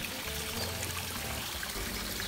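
Water steadily trickling and pouring into a garden fish pond, an even splashing hiss.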